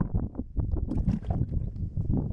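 Wind buffeting the microphone, a low rumble in irregular gusts, with rustling as things are packed into a motorcycle top case.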